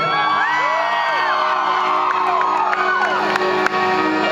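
Audience whooping and screaming, many rising and falling cries, over a live rock band holding a steady chord.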